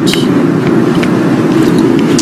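Steady low rumble of a car in motion, with engine and road noise constant throughout.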